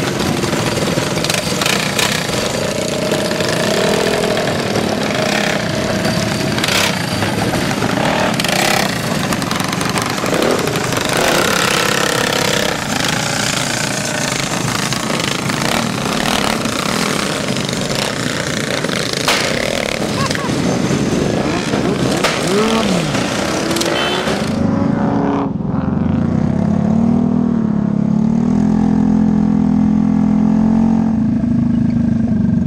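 A pack of small-engined scooters and mini bikes running and revving together, with many engine notes rising and falling over one another. About 25 seconds in, it changes to a single small engine heard from on board, a low note stepping up and down as it rides.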